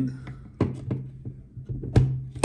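A few sharp clicks and knocks of plastic parts as a 3D-printer extruder is pressed into place on a printed printhead carriage, the loudest right at the end, over a steady low hum.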